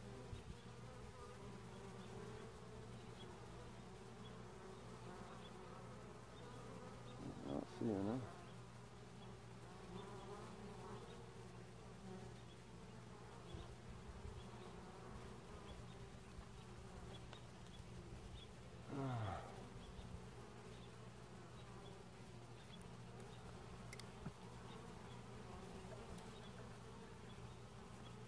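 Faint steady hum of honey bees around an open hive. Single bees buzz loudly past the microphone about eight seconds in and again near nineteen seconds, the second one's pitch dropping as it goes by.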